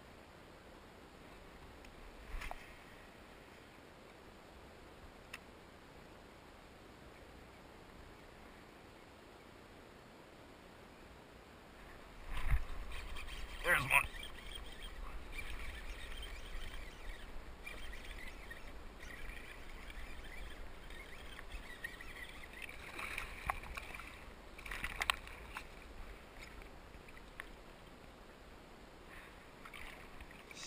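Sounds of fishing from a kayak on a pond: faint still-water ambience at first. From about twelve seconds in come a low rumble and several short knocks and clatters, as of the angler moving about in the kayak and handling his gear.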